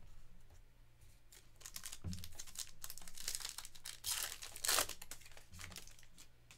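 A trading-card foil pack being torn open, its wrapper crinkling and rustling, with the loudest rips about four seconds in.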